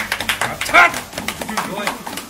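A small group clapping rapidly together, with voices calling out in celebration, one loud cheer about a second in.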